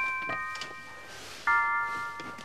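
Bell-like chime tones. A chord is struck at the start and another a moment later, then a fuller one about one and a half seconds in; each keeps ringing and slowly fades.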